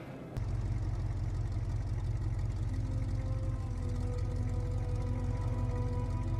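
A vehicle engine in a film soundtrack, running steadily with a low, evenly pulsing rumble. It cuts in suddenly about half a second in, under slow held notes of score music.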